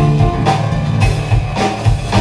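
Live band playing an instrumental passage: electric guitar, bass guitar, keyboards and drum kit, with drum hits about twice a second under sustained notes.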